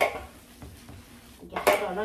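Gloved hands kneading raw ground-meat sausage filling in a large metal bowl, the bowl clanking sharply at the start and again about a second and a half in.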